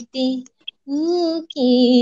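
A woman singing a Bengali song solo and unaccompanied, in held notes broken by short pauses, with a rising note about a second in.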